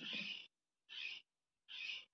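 Three short breathy hisses, each under half a second, from a person breathing close to the microphone between sentences.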